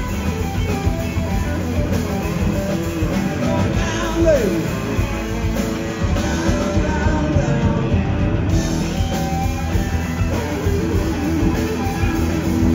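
Live blues-rock band playing: electric guitar over bass and drums, with a guitar note sliding down in pitch about four seconds in.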